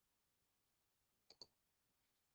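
Near silence with a close pair of faint clicks about a second in, like a computer mouse double-click.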